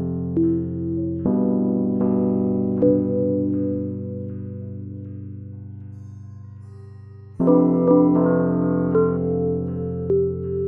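Slow keyboard music, most likely an electric piano: held chords with single notes added above them. A chord is struck about a second in and fades slowly, and a louder new chord comes in about seven seconds in.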